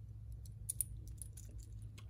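Light metallic clicking and clinking of a stainless steel watch bracelet's links and clasp as the heavy watch is handled and turned over, a quick irregular run of small clicks starting about half a second in. A steady low hum sits underneath.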